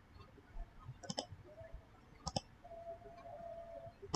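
Computer mouse clicking: two quick double-clicks, about a second in and again a little over two seconds in.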